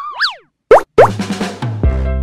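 Cartoon sound effects in a children's music track: a quick whistle-like glide that rises and falls, a brief gap, then two fast rising 'bloop' sounds. A music track with a steady low beat starts near the end.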